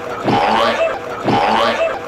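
A short comic sound effect repeated about once a second, each time a quick upward sweep that settles into a brief held tone.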